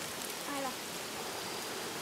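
Steady rush of flowing river water, with a faint, brief voice about half a second in.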